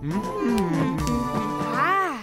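Cartoon background music with a character's wordless vocal sounds; near the end a voice rises and falls in pitch.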